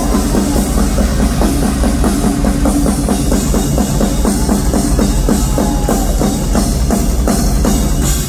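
Live drum kit solo: a fast, continuous run of strokes around the drums, with the kick drum underneath.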